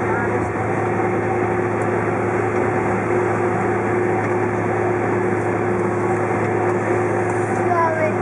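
Steady cabin noise inside a Boeing 767-400ER rolling along the ground after landing: its engines running at low power with a constant hum, over the even rumble of the airframe and air system.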